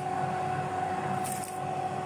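Tefal Easy Fry & Grill air fryer running mid-cook: a steady fan whir with a faint constant hum.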